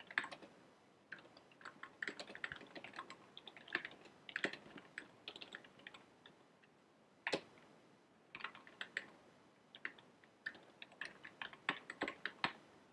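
Typing on a computer keyboard: irregular runs of quick keystrokes with a few pauses of about a second, and one sharper, louder keystroke about seven seconds in.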